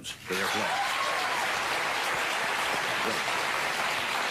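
Studio audience applauding and cheering in answer to a show-of-hands question, with one voice whooping about half a second in.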